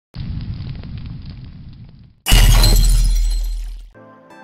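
Sound effect for a channel intro. A low rumble with crackles builds for about two seconds, then a sudden loud crash with a deep boom underneath fades out over about a second and a half.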